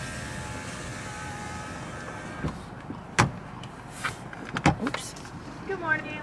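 Car's electric window motor running for about two and a half seconds, the sound of the driver's window being lowered at a drive-thru, then a few sharp clicks and knocks.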